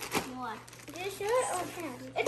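Quiet, low talking, with light rustling of a plastic mailer bag as a shirt is pulled out of it.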